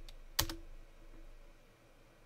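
One sharp click of a computer keyboard key about half a second in, followed by faint room hum.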